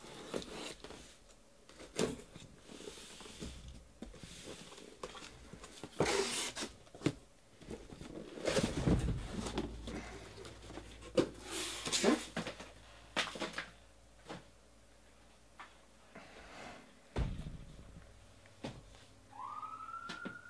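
Cardboard case slit open along its seam with a knife, then cardboard boxes slid out and stacked: scraping and rustling of cardboard with knocks as the boxes are set down. Near the end a siren starts, rising in pitch and then holding steady.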